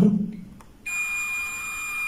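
Digital multimeter's continuity beeper sounding a steady high-pitched tone, starting just under a second in, as the probes touch an SMD ceramic capacitor on a laptop motherboard: the meter is reading a very low resistance across it.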